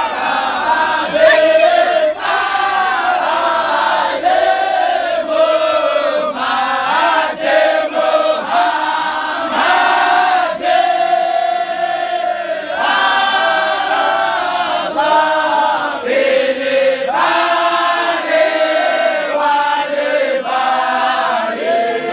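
Group of men and boys chanting together in an Islamic dahira devotional chant, many voices singing in short repeated phrases.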